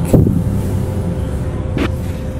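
Soft background music over a low rumble, with a sharp knock just after the start and another near the end.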